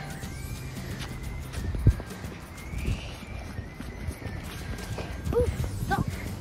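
Footsteps crunching through deep snow over a low rumble of wind on the microphone, with one sharper thump about two seconds in. Faint music plays underneath.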